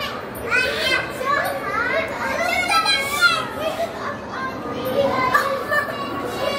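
Young children's high-pitched voices calling out and chattering excitedly over a steady background hubbub, with no clear words.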